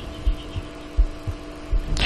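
A steady low electrical hum of room tone, with a few soft low thumps scattered through it.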